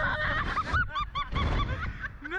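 Ride passengers shrieking with laughter in rapid, high-pitched short bursts, several a second, as they are flung and flipped on a reverse-bungee ride. Wind rushes over the microphone underneath.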